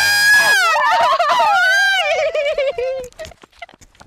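Two men shouting and wailing in high, strained voices that overlap; the shouting dies away about three seconds in.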